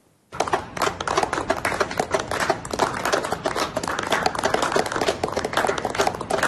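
A group of people clapping their hands: a dense, irregular patter of claps that starts suddenly just after a brief silence and keeps up at an even level.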